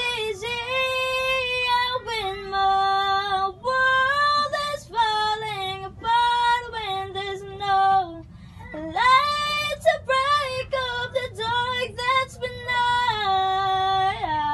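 A young woman singing solo and unaccompanied, a slow pop ballad with long held notes. Her phrases are broken by short pauses for breath, the longest a little past the middle.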